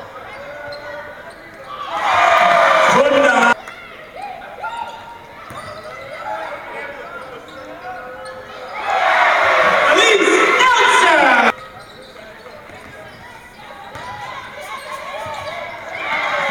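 Women's basketball game in an arena: a ball bouncing on the hardwood and players' voices, broken twice by loud bursts of crowd cheering after shots, each lasting a couple of seconds and cutting off suddenly.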